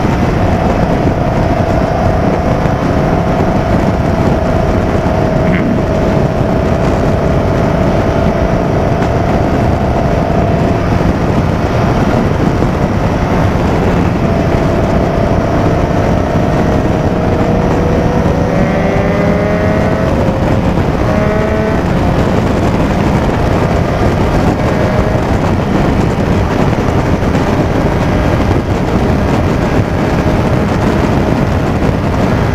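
Motorcycle engine running at highway speed under loud, steady wind rush on a helmet-mounted microphone. About two-thirds of the way through, the engine note climbs in a few short rising steps as the bike accelerates through the gears.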